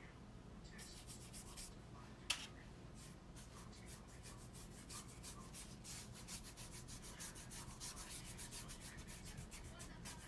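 Faint, quick repeated rubbing strokes against a hard surface, the kind made by sanding or brushing wood; they thicken into a steady run about three seconds in. A single sharp click a little after two seconds.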